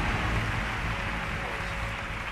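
Large audience applauding, an even wash of clapping that slowly fades.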